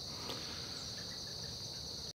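Steady, high-pitched chorus of crickets, continuous and unchanging.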